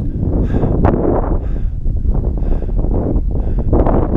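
Wind buffeting the action camera's microphone: a heavy, uneven low rumble with a few brief rushing swells.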